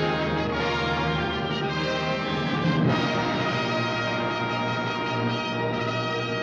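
Orchestral score with brass playing held chords, swelling and moving to a new chord about three seconds in.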